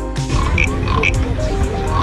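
Carved wooden frog (frog guiro) rasped with its stick along its ridged back, giving a few short croaks, with music in the background.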